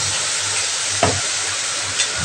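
Potatoes and freshly added ground onion masala paste sizzling in hot oil in a kadai, with one sharp utensil knock about a second in.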